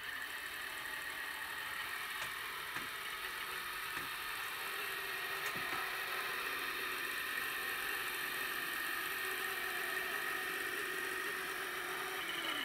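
HO-scale Walthers powered crane running forward under DCC control, its small electric motor and gearing giving a steady whir, with a few faint clicks as the cars roll along the track.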